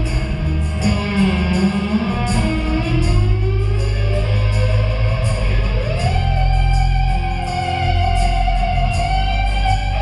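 Live rock band playing an instrumental passage: a lead electric guitar plays bending, gliding notes, the last rising into one long held note, over bass and drums with regular cymbal strokes.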